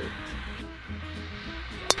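Background music, then near the end a single sharp crack of a golf club striking the ball on a tee shot.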